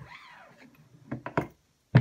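Single-stage reloading press decapping a case: a few light clicks, then near the end one sharp, loud snap as the lowered decapping pin punches the spent primer out.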